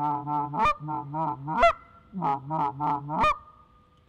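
Short reed goose call (a Tim Grounds call) blown in a laydown murmur: two runs of low, rapid, rolling chatter, with sharp high clucks that break upward, once about two-thirds of a second in, again near the middle, and once ending the second run. The clucks are thrown in at random to keep the feeding flock's excitement alive in the laydown call.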